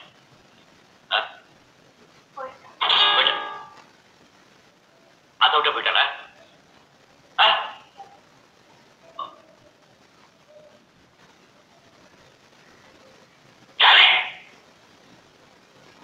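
A voice speaking in short separated phrases, with near-quiet pauses between them; the longest phrase comes about three seconds in and the loudest near the end.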